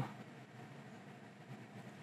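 Tesla Model 3 air-conditioning blower running at a medium fan setting: a faint, steady rush of air from the dashboard vents.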